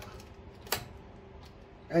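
A single sharp click as the generator's air-cleaner cover is worked into place by hand, amid faint handling noise.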